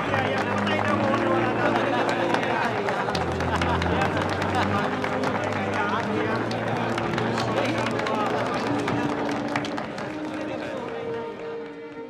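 Film score with held low notes, playing under a crowd cheering and clapping. The cheering and clapping fade near the end, leaving the music.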